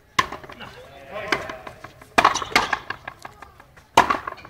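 Frontenis rally: the rubber ball cracking off rackets and the front wall, three sharp strikes about two seconds apart with lighter clicks between, and voices in the background.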